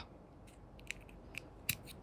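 A metal blade cutting at the seam of a plastic USB flash drive case: four faint, sharp clicks, the loudest a little after halfway through.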